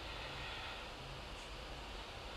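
Steady low background hiss with a faint hum: room tone, with no distinct event.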